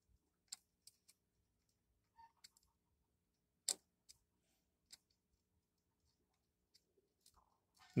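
Near silence with a few faint, scattered clicks, the sharpest about three and a half seconds in: small handling sounds of multimeter test probes held against a circuit board.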